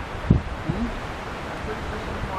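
Gusty wind rushing through pine trees as a thunderstorm front arrives, a steady rush of noise, with a low thump about a third of a second in.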